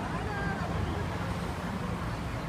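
Street ambience of steady road traffic, a continuous low rumble, with a faint passing voice in the first second.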